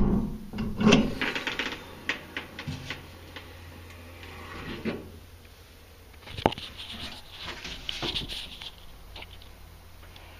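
Pickup truck toolbox lid shut with a loud thud, followed by a second knock and a run of metallic clicks and rattles. About six and a half seconds in there is a sharp click and more rattling as the lid is worked open again.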